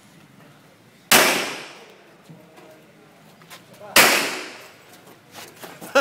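Two pistol shots about three seconds apart, each sharp and trailing off in a short echo.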